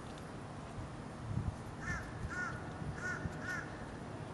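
A bird calls four times in two quick pairs during the second half, each call a short arched note, like a crow cawing. There are low thumps a little over a second in.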